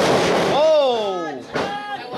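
Body hitting the wrestling ring mat: a noisy crash at the start. Then a man's voice gives one long falling 'ohhh' lasting about a second.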